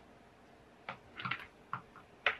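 A few light clicks and rustles from knitting needles and a chunky knit sweater being worked in the hands, starting about a second in.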